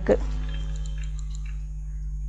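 A steady low electrical hum with faint hiss in the recording's background, in a pause between spoken lines.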